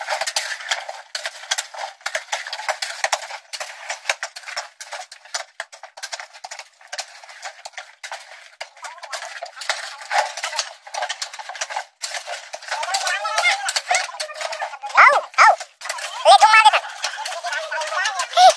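Many short, sharp knocks and clicks, close together and without a steady rhythm, thin-sounding with no bass. In the last few seconds a person's voice calls out a few times.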